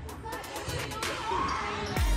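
A volleyball being struck during a rally on a gym court, a few sharp hits in the first half-second, with players and spectators calling out about a second in.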